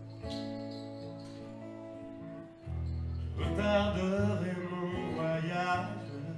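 Man singing to his own strummed acoustic guitar: a chord rings out, a new chord is struck about two and a half seconds in, and his voice comes in over it for the second half.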